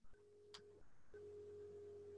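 Faint steady electronic tone over near silence, breaking off briefly just under a second in, with a faint click about half a second in.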